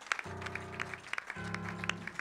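Church band playing two held chords with a short break between them, while scattered hand claps come from the congregation.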